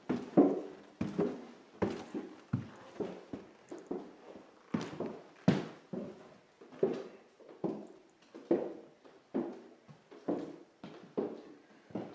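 Footsteps going down a wooden stairway, a hollow knock about every three-quarters of a second.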